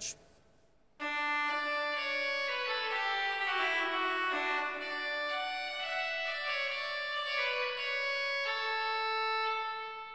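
Pipe organ trumpet stop played on its own, the copper trumpet with hooded resonators that Berghaus added to the 1954 Aeolian-Skinner organ. It sounds a short passage of moving chords, starting about a second in, with a bright reed tone, and dies away in the room's reverberation near the end.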